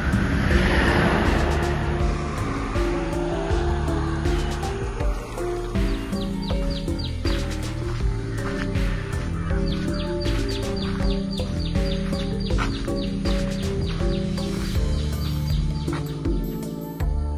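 Background music: a melody in steady stepped notes, joined by a regular beat about six seconds in.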